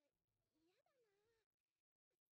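Near silence, with only a very faint, high, gliding voice-like sound.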